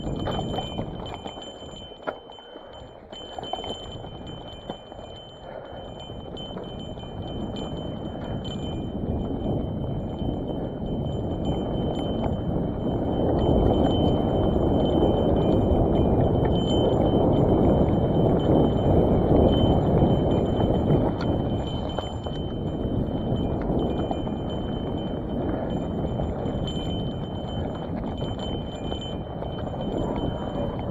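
Hardtail cross-country mountain bike rolling fast down a rocky dirt trail: tyres crunching over rocks and roots, and the bike rattling and clinking over every bump. A steady rushing noise swells louder through the middle stretch, then eases off.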